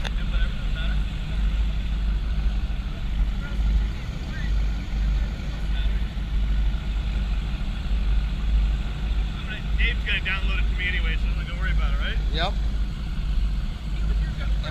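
Race boat's engine running at low cruising speed, a steady deep rumble, with wind buffeting the camera microphone. Faint voices can be heard about two-thirds of the way in.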